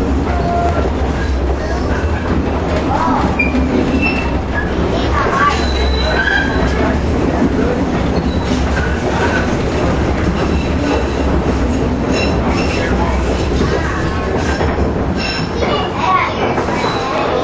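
Electric trolley car running along its track, heard from inside the car: a steady rolling rumble and low hum, with a few brief high-pitched wheel squeals.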